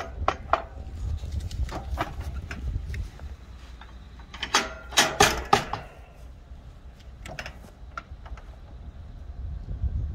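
Metal clanks and knocks from the van's wheelchair ramp and its loose parts being handled, with a burst of loud rattling clanks about halfway through.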